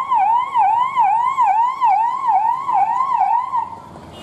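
Police vehicle's electronic siren in a fast yelp, its pitch sweeping up and down about three times a second. It cuts off shortly before the end.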